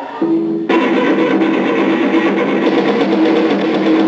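Live rock band of electric guitar, bass guitar and drums. A lone held note sounds briefly, then the whole band comes in together less than a second in and plays on loud and steady.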